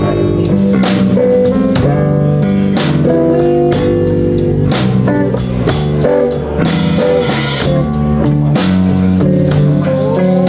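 Live blues band playing: drum kit keeping a steady beat under electric guitars and bass guitar.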